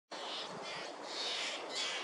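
Birds calling in the garden: about four short, hazy calls over a faint steady background.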